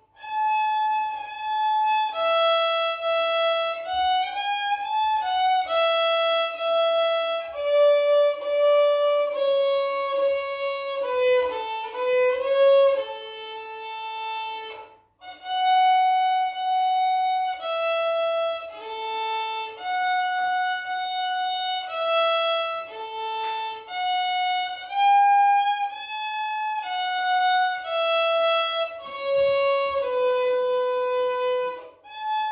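Solo violin played unaccompanied: a slow melody of held, separate bowed notes, with a quicker run of moving notes a little before halfway and a brief pause about halfway through.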